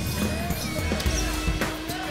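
Basketball dribbled on a hardwood court, the bounces coming every half second or so, with music playing over the arena's sound system.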